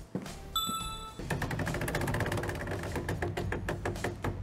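A short electronic chime sounds about half a second in. From just after a second, the game-show prize wheel spins: its pegs click against the pointer in a rapid run that gradually slows as the wheel loses speed.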